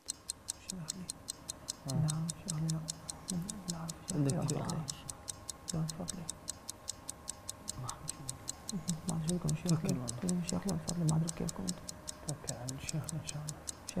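Quiz-show countdown clock effect ticking fast and evenly, timing the team's answer, with the contestants conferring in low voices underneath.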